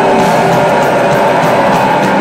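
Metalcore band playing live: loud, dense distorted guitars and drums, recorded from within the crowd.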